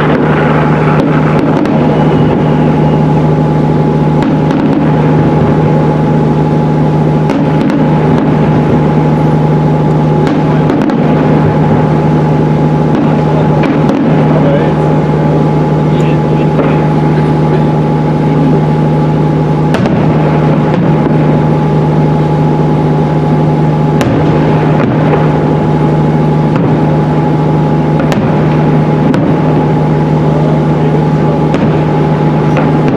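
A steady motor drone with a constant low hum and a fainter higher tone, over people talking. A few sharp firework bangs break through now and then.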